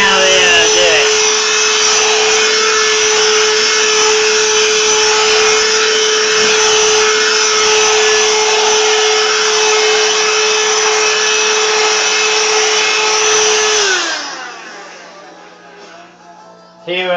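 Cordless rechargeable hand vacuum running with a steady whine. It is switched off about fourteen seconds in, and its motor winds down in pitch.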